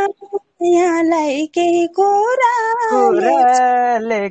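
A woman singing unaccompanied, holding long, gently wavering notes in short phrases with brief breaks between them, heard over an online call.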